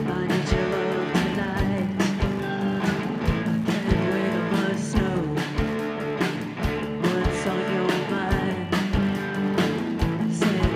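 A rock band playing live: overdriven electric guitars, bass guitar and drums, with a steady kick-drum beat about twice a second.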